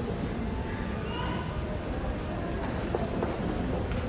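Live Kathak accompaniment: tabla strokes and the dancers' footwork on a wooden floor making a rhythmic knocking, with a voice over a steady low rumble.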